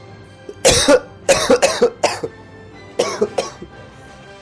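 A man coughing hard as he comes round and starts breathing again after CPR: a run of about five sharp coughs, then two more about three seconds in, over quiet background music.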